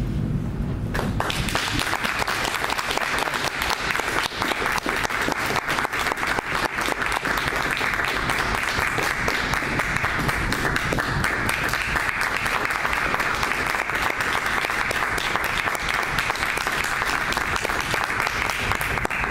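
Audience applauding, the clapping beginning about a second in and keeping up steadily.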